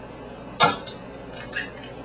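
An egg being cracked open: one sharp tap about half a second in, then a few faint small clicks.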